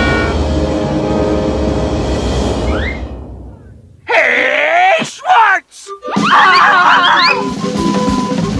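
Film soundtrack: a held music chord that fades away over the first three to four seconds, then several voices sliding up and down in pitch, like groans and screams, over music with a steady high tone.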